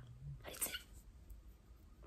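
A faint low hum in a woman's voice that stops just under half a second in, followed by a short breath, then quiet.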